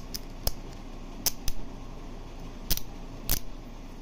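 The ratcheting adapter of a First Info half-inch breaker bar clicking as its selector ring is set and the head is turned: about five sharp, irregularly spaced metal clicks.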